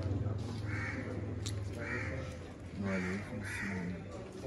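Crows cawing four times, short harsh calls over a steady low hum, with a single metallic clink of a steel ladle against the cooking pot about a second and a half in.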